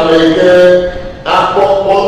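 A man's voice chanting into a microphone, held on long steady notes in two drawn-out phrases with a brief break a little past one second in.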